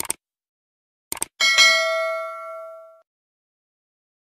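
Subscribe-button animation sound effect: a single mouse click, then a quick double click about a second later, followed by one bright bell ding that rings out and fades over about a second and a half.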